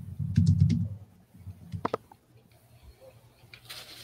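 Typing on a laptop keyboard: a quick run of keystrokes that stops about a second in, followed by a few isolated clicks.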